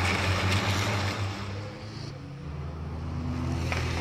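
Race trucks' engines running at speed as two trucks pass on the track, a steady low drone under tyre and wind noise that dips in level about halfway through and then builds again.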